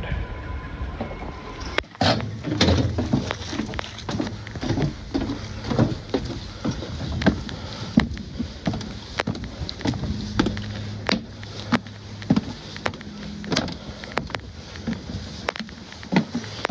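Footsteps climbing a long flight of metal checker-plate stair treads, a sharp knock with each step at about one and a half steps a second, starting about two seconds in.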